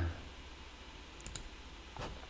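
A couple of faint, short computer mouse clicks a little over a second in, over quiet room tone with a low hum.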